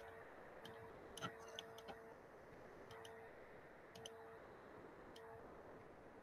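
Faint computer mouse clicks, about half a dozen, scattered irregularly, over near-silent room tone, with a faint hum that comes and goes between some of the clicks.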